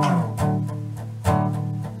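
Steel-string acoustic guitar played with picked and strummed strokes. There is a strong stroke at the start and two more about half a second and just over a second in, each left ringing with low bass notes under brighter overtones.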